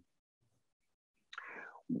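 Near silence for over a second, then a short, faint breath from a speaker, with speech starting right at the end.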